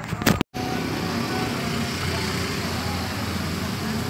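Steady hum of road traffic. A short clatter of handling noise comes first, then a brief dead gap about half a second in.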